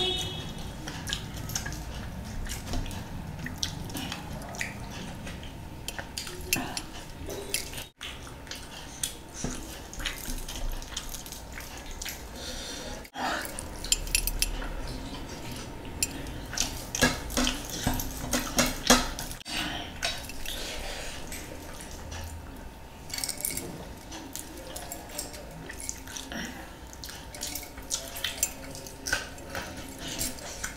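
Close-up eating sounds: wet chewing and lip smacking, and frequent sharp clicks as metal rings and bracelets knock against ceramic plates while curry and biryani are scooped up by hand.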